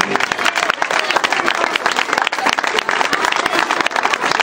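A crowd applauding, with some hands clapping close to the microphone and voices mixed in.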